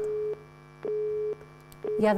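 Telephone busy tone on a phone line fed into the studio sound: a single steady beep switching on and off about every half second, three beeps in all. It signals that the number being called is engaged.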